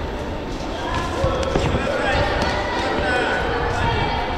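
Indistinct voices of people in a sports hall, with a few dull thumps around the middle.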